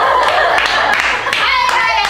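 Several young women clapping their hands rapidly while laughing together, a dense patter of claps under their voices.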